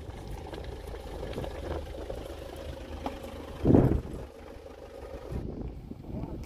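Low, steady outdoor background rumble with a faint steady hum, and one louder rush lasting about a quarter of a second a little past halfway.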